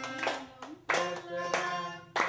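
A group of people singing a song together and clapping along to the beat, about one or two claps a second.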